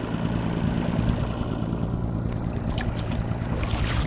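Boat's outboard motor running steadily at trolling speed, with wind and water noise over it. Near the end, a few short splashes as a hooked trout is netted beside the boat.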